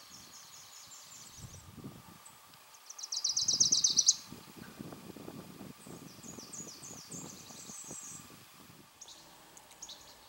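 Wilson's warbler singing: a rapid chatter of high chips lasting about a second, a few seconds in. Fainter high songs of other birds come before and after it.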